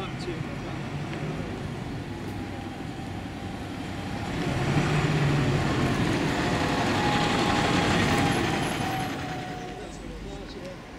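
Diesel single-deck bus pulling away and driving past close by: its engine hum swells about four seconds in, stays loud for a few seconds, then fades near the end.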